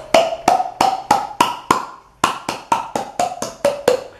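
Hand claps with cupped palms, the air pushed into an open mouth so that each clap sounds a hollow pitched note, like a wood block. About three claps a second play a scale: the note climbs over the first two seconds, then after a short break it steps back down.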